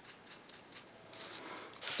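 Stiff-bristled flat paintbrush dry-brushing paint onto a painted wooden cutout: faint, quick scratchy strokes, about five a second, with a longer, slightly louder brushing stroke past the middle. A breath in near the end.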